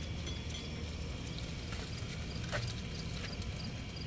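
A Honda S65's small single-cylinder four-stroke engine idling with a low, uneven putter.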